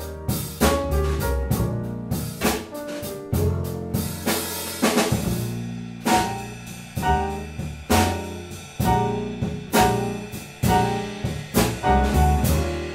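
Jazz trio of acoustic grand piano, double bass and drum kit playing an instrumental passage of a slow ballad, piano chords over a walking bass with accented drum hits. A cymbal wash rises about four seconds in.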